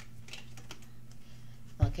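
Tarot cards being shuffled and handled in the hands, giving a few light clicks and flicks of card stock over a low steady hum.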